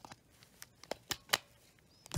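A few sharp little clicks, about a second in, from hands handling a Zhu Zhu Pet toy hamster's plastic motor housing.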